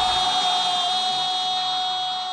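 A held, ringing electronic tone with high shimmering overtones, slowly fading: a logo-sting sound effect.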